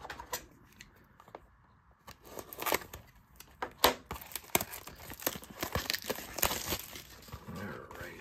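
Plastic wrap on a cardboard trading-card box being slit with a small cutter and torn off, crinkling and crackling with many sharp clicks. It starts about two seconds in, after a quiet start.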